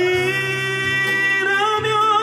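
A man singing one long high note of a Korean pop ballad into a handheld microphone. The note holds steady for over a second, then slips slightly lower and wavers near the end.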